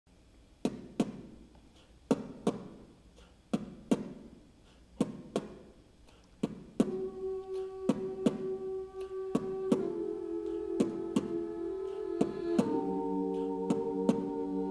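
A cappella group opening a song: sharp percussive hits in pairs, about every second and a half, set the beat. About halfway in, voices join with a wordless sustained chord under the hits, moving to a new chord twice.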